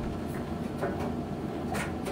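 A steady low background hum under room noise, with a couple of faint clicks.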